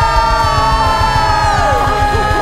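Live norteño-style band music: a long held high note, sinking slightly in pitch, over a quick steady low beat.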